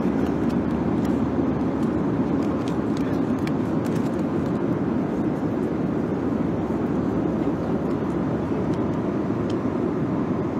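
Steady, loud drone of an airliner cabin in flight, engine and airflow noise filling the cabin, with small scattered clicks from foil meal trays being handled.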